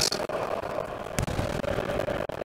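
Gym room noise with a faint steady hum, and one sharp knock a little after a second in.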